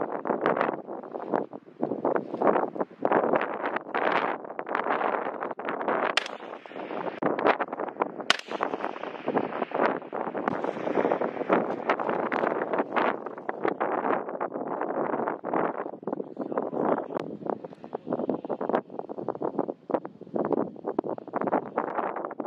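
Wind buffeting the microphone in irregular gusts, with two sharp cracks about six and eight seconds in.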